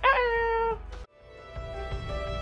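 A person's short, drawn-out animal-like vocal call, its pitch dipping and then held for under a second. It cuts off abruptly, and outro music with held notes fades in.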